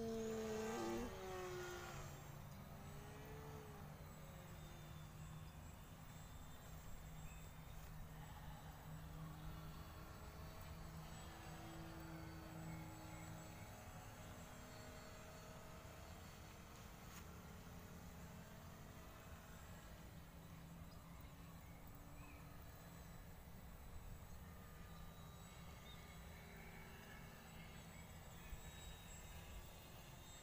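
A short burst of laughter at the very start, then a faint, distant motor hum whose pitch slowly rises and falls.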